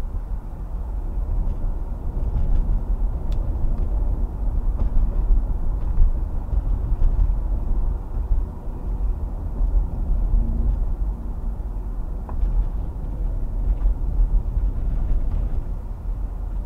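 A car driving on a paved road, heard from inside the cabin: a steady low rumble of road and engine noise.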